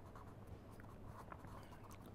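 Pen writing on paper: faint, small strokes as a word is written out.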